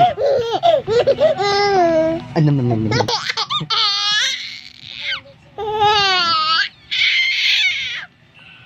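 A baby laughing in high-pitched peals, three of them in the second half, with an adult's low voice making playful sounds in the first half.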